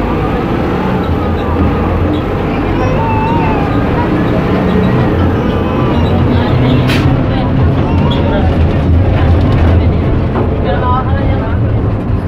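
Inside a city bus: the engine runs with a loud, steady low rumble filling the cabin, with passengers' voices in the background. A single sharp click about seven seconds in.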